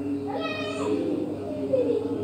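A single short, high-pitched cry about half a second long, starting about a third of a second in, its pitch rising and then dropping at the end. A man's voice carries on steadily underneath.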